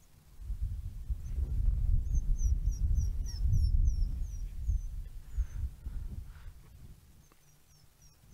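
African wild dogs squeaking to each other: short high chirps, repeated in quick series through the middle and again near the end. These are contact calls as the pack stirs and moves around. A loud low rumble runs underneath from about half a second in until about six seconds.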